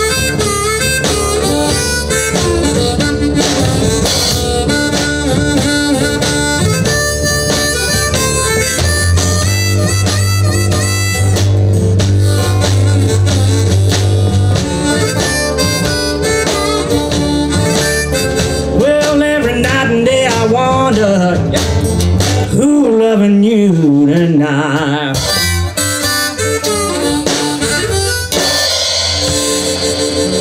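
Live blues trio in an instrumental break: a harmonica leads with bending, wavering notes over acoustic guitar, upright bass and drums.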